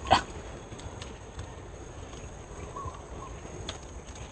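A dog barks once right at the start, then a faint short call follows about three seconds in.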